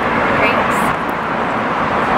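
Steady city street noise: a continuous wash of traffic passing on the road.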